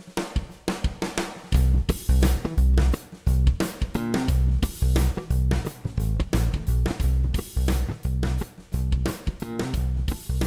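Background music with a steady drum beat and bass; the heavy bass and kick come in about one and a half seconds in.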